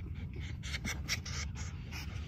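Soft scratchy rubbing in quick repeated strokes: a hand ruffling a fox's fur close to the microphone.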